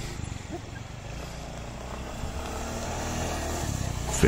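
Small automatic scooter engine running as it turns on beach sand, a steady low drone that grows gradually louder.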